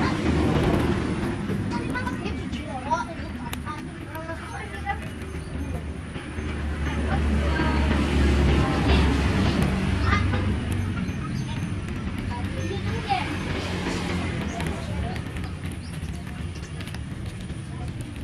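Outdoor background noise: a low traffic rumble that swells about halfway through and then eases, with faint distant voices.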